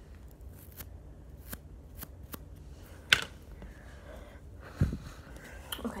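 Blue slime being squeezed and kneaded by hand, giving irregular sharp clicks and pops, loudest about three seconds in, with a dull thump a little before the end.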